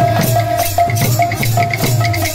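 Kirtan band music: a large two-headed barrel drum with jingling percussion keeping a quick, steady beat of about five strokes a second, over a held melody note that starts and stops.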